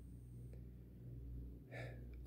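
Quiet room tone with a faint low hum, then a man's short intake of breath near the end, just before he speaks again.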